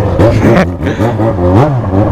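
Yamaha XJ6's inline-four motorcycle engine running, heard from the rider's seat, its pitch rising and falling a few times as the throttle is worked.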